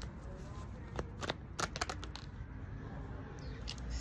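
A deck of tarot cards being shuffled by hand, with short, irregular card flicks coming in small clusters.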